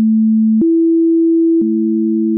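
Pure sine tone at 220 Hz that switches to 330 Hz about half a second in. About a second and a half in both tones sound together, a perfect fifth in the 3:2 ratio. A faint click marks each change.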